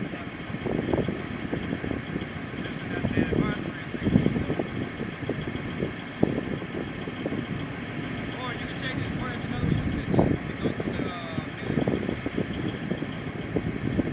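M270 MLRS launcher's diesel engine running at idle, a steady rumble broken by irregular gusts of wind on the microphone.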